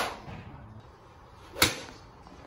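Two crisp strikes of a golf club hitting the ball off a driving-range mat, one right at the start and another about a second and a half later.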